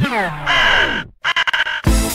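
DJ mix transition: the music winds down in falling pitch glides, like a record slowing to a stop. A short processed vocal drop follows in two parts with a brief silent break between them, then a disco-house beat kicks in near the end.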